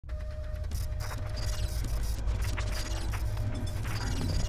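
Title-sequence sound effect of a seismograph-style pen mechanism: rapid mechanical clicking and ratcheting over a deep, steady rumble, with a faint high tone coming and going.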